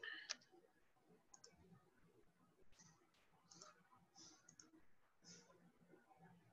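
Near silence with a few faint, brief clicks, like a computer mouse being clicked.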